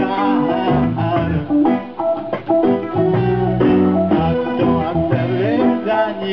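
Live band playing a reggae song, with guitar, bass line and keyboard.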